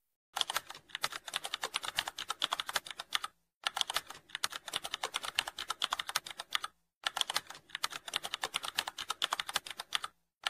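Computer keyboard typing: rapid key clicks in three runs, with short pauses about three and a half and seven seconds in.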